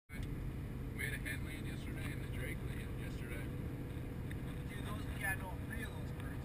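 Steady low road and engine rumble of a pickup truck driving on a highway, heard from inside the cab, with a faint steady hum.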